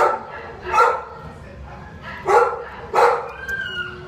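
A dog barking: four short barks, two close together at the start and two more about two seconds later.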